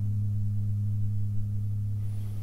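A steady, low electronic hum or drone with one unchanging pitch. It runs evenly under black title cards.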